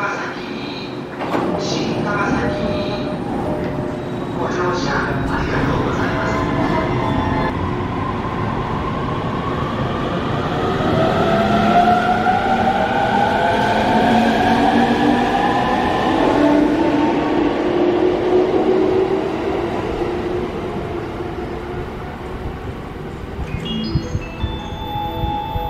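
JR electric commuter train pulling out of the station. The whine of its traction motor inverters rises steadily in pitch as it gathers speed, over the rumble of wheels on rail, and fades in the last few seconds.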